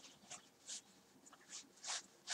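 Faint, short rustles of a necktie's fabric being worked around a knot by hand, about four brief soft hisses.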